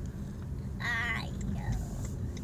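A young child's high-pitched voice giving a short, wavering squeal about a second in, over the low rumble of a car interior.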